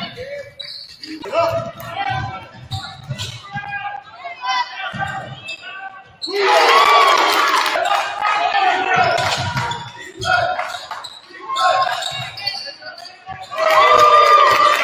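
Echoing gym sound of a high school basketball game: a basketball dribbling on the hardwood floor and players and coaches shouting. About six seconds in, the sound gets suddenly louder and busier.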